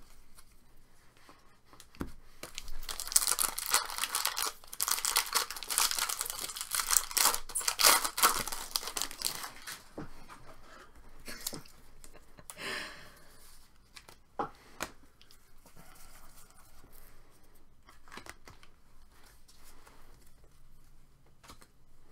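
Foil wrapper of a trading-card pack being torn open and crinkled: a dense crackling tear lasting several seconds. Then quieter rustling and clicking of cards being shuffled and sorted through.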